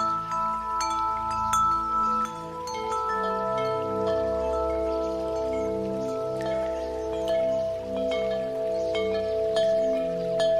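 Ambient background music of held pad chords with wind chimes tinkling over them; the chord changes about three seconds in.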